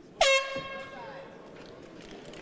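Round-ending horn sounding once: a sudden, loud single steady note with a brief upward slide at its start, fading over about a second. It is the signal that the second round is over.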